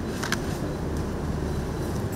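A steady low room rumble with one sharp camera shutter click about a quarter second in.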